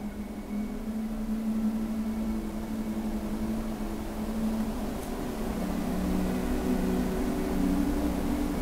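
A steady low mechanical hum made of several held tones, which shift a little lower about five and a half seconds in.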